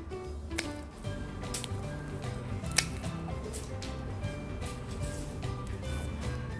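Background music, with a few sharp snips of hand pruning shears cutting mandarin-tree twigs, the loudest about half a second and nearly three seconds in.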